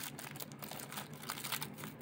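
Toy packaging faintly crinkling and crackling as an accessory is unwrapped by hand, a run of small irregular clicks.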